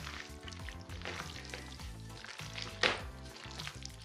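Wet squelching and crackling of gloved hands kneading raw chicken pieces coated in minced garlic and spices in a plastic bowl, with one louder squelch near the end. Quiet background music runs underneath.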